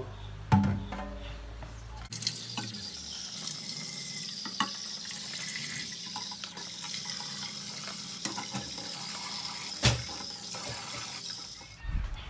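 Tap water running into a metal cooking pot in a sink while eggs are set into it, starting about two seconds in, with a few light clicks of shells against the pot and one sharper knock near the end.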